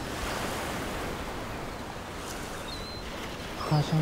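Sea waves washing and wind blowing over an open microphone: a steady hiss with no clear breaks, with a few faint high chirps. A man's singing voice comes in near the end.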